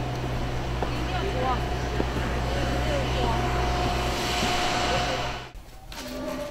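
Steady low hum of a large room's background noise, with faint distant voices over it; it cuts off abruptly about five and a half seconds in.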